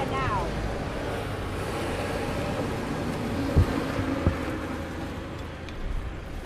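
Highway traffic going by as a steady low rumble, with two short knocks about three and a half and four seconds in.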